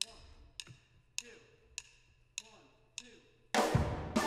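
A count-off of six evenly spaced clicks, a little under two a second, then a steel band comes in loud near the end with steel pans and drums playing a calypso.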